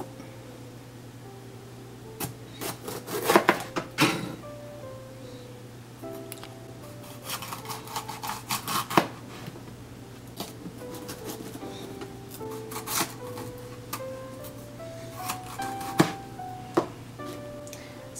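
Soft background music with a slow, stepping melody, over which a chef's knife cuts through bell pepper onto a plastic cutting board in several short clusters of sharp taps, the loudest about three to four seconds in.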